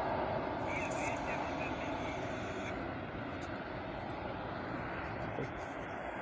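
Steady rushing noise of a large fuel-tank fire burning, recorded on a phone, with faint voices of onlookers underneath.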